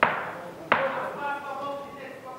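Two sharp smacks of strikes landing in a close clinch against the cage, about 0.7 s apart, each ringing out briefly in the hall.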